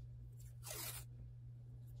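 A strip of tape pulled quickly off its roll, one short rip about half a second in, over a steady low hum.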